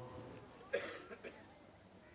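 A single short cough a little under a second in, followed by a couple of faint small sounds.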